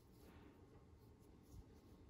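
Near silence with faint rustling as hands handle stuffed crocheted yarn handles.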